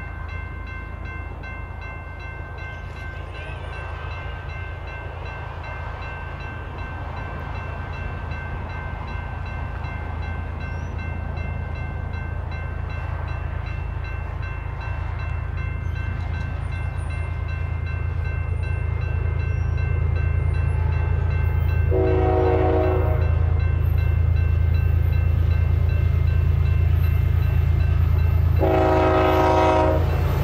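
BNSF diesel freight locomotives approaching, their engine rumble growing steadily louder. The horn sounds twice: a blast of about a second roughly three-quarters of the way in, then a longer one starting near the end.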